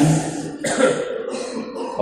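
A man clearing his throat into a close microphone, a short voiced start followed by rough, noisy rasping.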